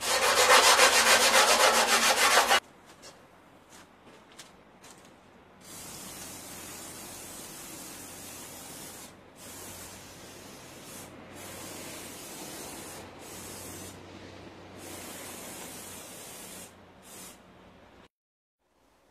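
Loud, fast hand scraping of rusty steel, which stops abruptly after about two and a half seconds. A few seconds later a spray bottle hisses in a series of bursts of one to three seconds, spraying boiled linseed oil onto a rusty steel bumper frame as rust protection.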